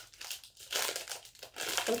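Crinkling of a peanut candy's snack wrapper being handled and opened, in two short spells.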